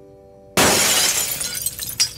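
A large glass shop window shatters suddenly about half a second in, the crash dying away into the tinkle of falling shards, after a pin is pushed into the pane.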